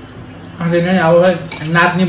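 Fork and cutlery clinking against glass bowls and plates as people eat, faint at first; about half a second in, a man's voice starts talking and is the loudest sound from then on.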